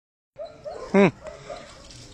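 A single loud bark from a Tibetan mastiff about a second in, dropping in pitch, with a few short, fainter, higher-pitched calls before and after it.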